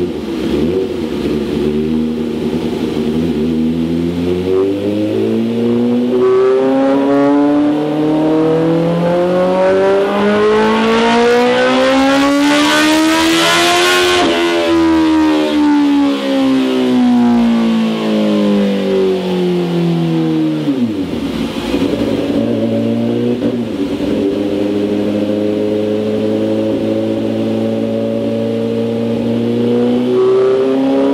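Kawasaki Ninja H2's supercharged inline-four pulling on a chassis dyno. The pitch climbs steadily for about twelve seconds to a peak, then winds back down for several seconds. About twenty seconds in the revs drop sharply, and the engine settles into a lower, slowly climbing run. It is a measuring run to correct the bike's air/fuel map.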